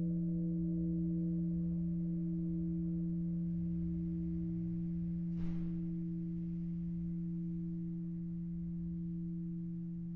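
A large metal Buddhist bowl bell rings on after a stroke of a padded mallet. It holds a low steady hum with a few higher overtones, one of them wavering slightly, and slowly fades. A faint click sounds about five and a half seconds in.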